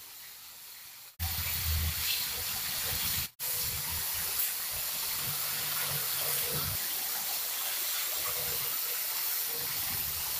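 Steady hissing noise with a faint low rumble underneath, broken by two abrupt cuts about one and three seconds in.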